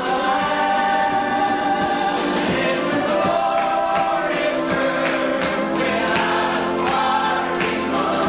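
A church choir of men and women singing a hymn together, the voices continuous and steady in level.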